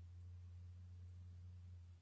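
A man's voice holding one low, steady hummed tone without words during chanted practice, breaking off right at the end.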